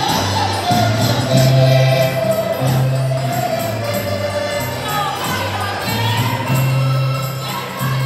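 Portuguese folk music played live by a rancho folclórico: group singing over guitar and a bass drum, with a steady beat.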